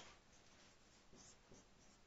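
Near silence with a few faint marker strokes on a whiteboard, about a second in.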